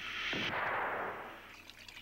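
An explosion sound effect for the fuel igniting in an animated two-stroke engine: a rushing hiss that starts suddenly and fades away over about a second and a half.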